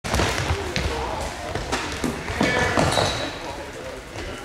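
Indoor floorball play in a large sports hall: sneakers squeaking and stepping on the court floor, sharp clacks from sticks and ball, and players' voices calling out, with a few short high squeaks and impacts scattered through.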